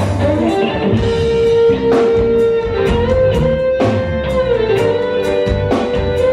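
Live band playing an instrumental break: an electric guitar solo of long held notes that bend in pitch, over drums, bass and keyboard.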